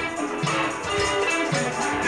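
Small live band playing an instrumental groove: guitar and bass over hand drums, with a steady repeating rhythm.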